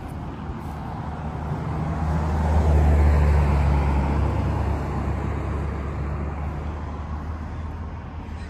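A road vehicle driving past, its low engine rumble growing to loudest about three seconds in and then slowly fading.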